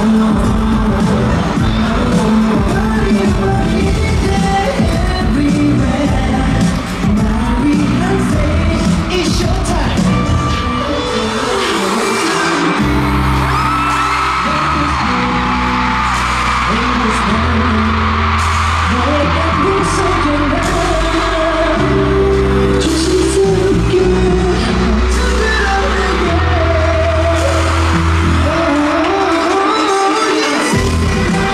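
Live K-pop concert performance played loud through an arena sound system, with singing over the music and a few whoops from the crowd. A deep bass line comes to the front about halfway through.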